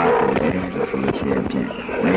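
Speech: a voice talking in Burmese, continuing without a pause.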